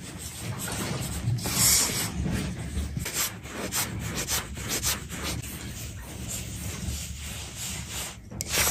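Hands rubbing poured-in oil into flour in a steel bowl: a continuous scratchy rustle made of many small, irregular scrapes.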